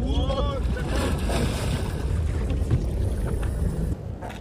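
Wind rumbling on the microphone over sea and boat noise at sea, with a brief shouted voice in the first half second.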